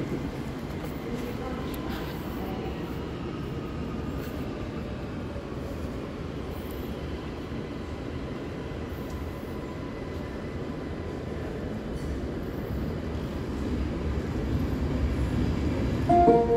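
ÖBB Cityjet double-deck electric multiple unit (Stadler KISS) rolling along the platform, a steady rumble of wheels and running gear with a faint squeal dying away in the first few seconds. The rumble grows louder near the end.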